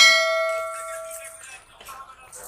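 Notification-bell 'ding' sound effect of a subscribe-button overlay: one bright metallic ding that rings out and fades over about a second and a half.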